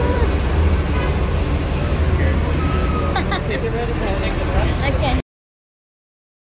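Airport rental car shuttle bus running at the curb: a steady low engine rumble with faint voices around it, cutting off suddenly about five seconds in.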